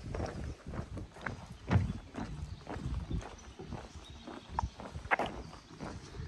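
Footsteps walking along a floating marina dock, an uneven string of knocks and taps.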